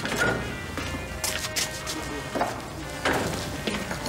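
Soft background music under several short, sharp clinks and clatters of crockery and cutlery as people eat and drink at a table.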